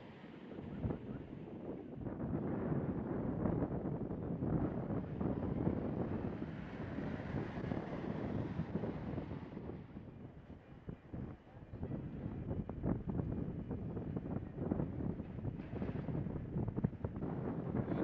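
Wind buffeting an outdoor microphone: a rough, uneven rumble that rises and falls in gusts, easing briefly a little past the middle.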